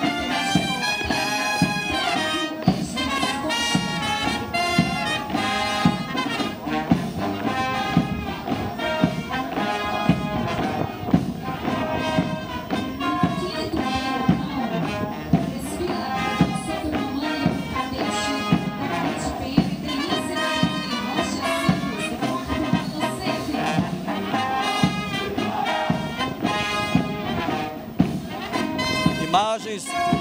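A military police brass band playing a march, brass instruments over a steady drum beat.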